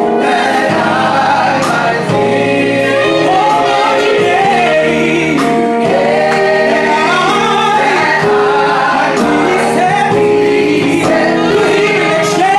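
Gospel choir and a male soloist singing live, with instrumental accompaniment.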